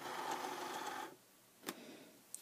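Cricut Explore cutting machine's rollers automatically feeding the cutting mat in: a steady motor whir that stops about a second in, followed by a single click.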